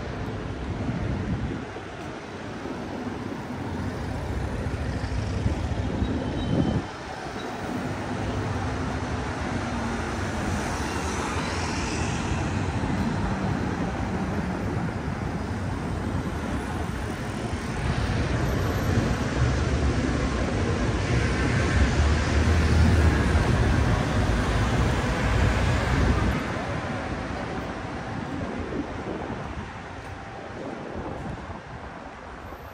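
City street traffic noise, cars passing on the road. A louder stretch of passing traffic runs through the second half and drops off suddenly near the end.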